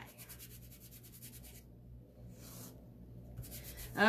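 Faint rubbing and rustling as a sticky Chalk Couture screen-print transfer is fuzzed: rubbed against fabric so it picks up lint and grips less, so it won't stretch when pulled off the surface.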